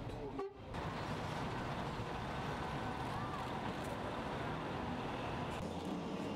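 City street traffic: cars running past in a steady wash of engine and tyre noise, with a car horn held for about a second and a half near the middle.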